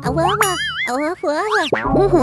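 Cartoon character's high, sing-song gibberish voice with swooping, wavering pitch, over light background music.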